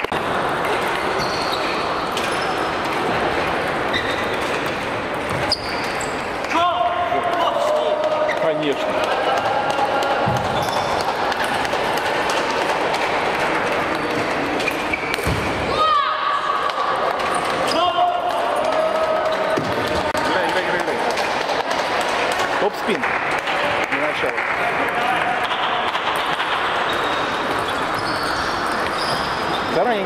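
Table tennis rallies: the ball clicking off bats and the table, over the steady chatter and shouts of a crowded, echoing sports hall.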